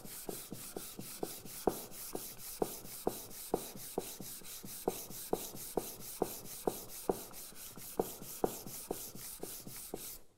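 Cast-iron bench plane sole rubbed back and forth on abrasive paper: a steady scratchy scrubbing with a short knock at each stroke, about two to three strokes a second, grinding off rust and flattening the sole.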